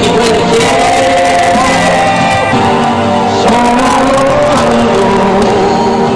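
Loud live band dance music with a singing voice over it.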